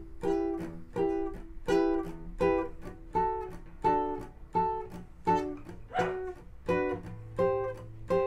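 Nylon-string classical guitar strummed in a half-funk rhythm: a slack-handed downstroke on deadened strings, then the fretted chord strummed up, about eleven even strums, changing chord twice.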